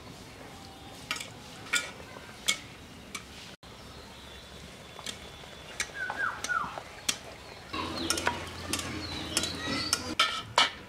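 Metal spatula clinking and scraping against an iron kadai as daal puri fries in hot oil, with a stretch of sizzling near the end.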